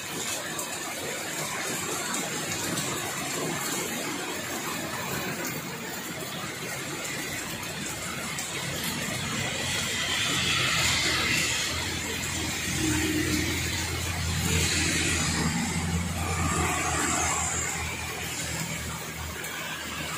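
Heavy rain pouring steadily. About halfway through, vehicles including a jeepney pass on the wet road: a low engine drone and tyre hiss through standing water swell, then fade near the end.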